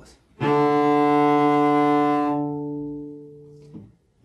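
Cello playing a single long bowed D on the open D string, held for three beats as a dotted half note. The note sounds steadily, then fades and stops near the end.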